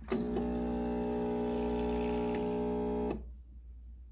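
CASABREWS 4700 GENSE espresso machine's 20-bar pump running with a steady buzz for about three seconds, then cutting off suddenly. The short run and stop is typical of pre-infusion, though the owner is not certain of it.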